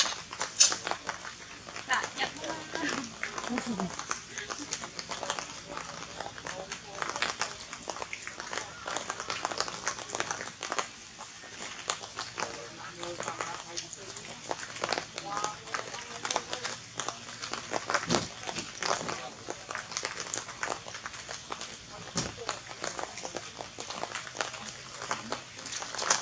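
People's voices talking, mixed with many short clicks and rustles.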